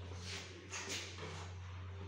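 A few short scraping rustles in the first second as a 3D plaster wall panel is picked up from a stack, over a steady low hum.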